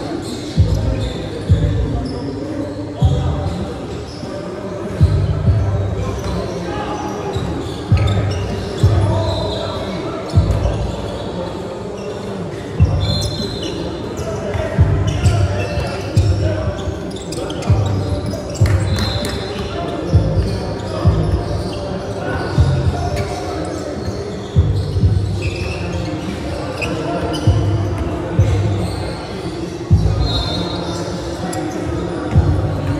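Basketball game in a gym: a ball bouncing on the hardwood again and again, short high squeaks, and players' voices, all echoing in the hall.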